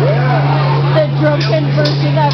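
People talking in a loud room over a steady low hum that holds one pitch.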